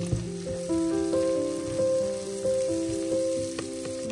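Sliced leeks and onions frying in a pan, a faint sizzle with a wooden spatula stirring and a knock just after the start, under background music of held melodic notes that is louder than the frying.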